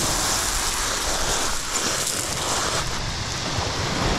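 Steady hiss of surf washing over a shingle beach, with wind on the microphone.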